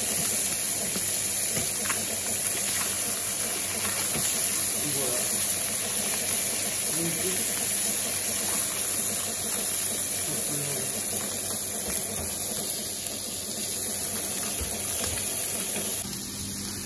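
Fish fillets frying in hot fat in a pan, a steady sizzle.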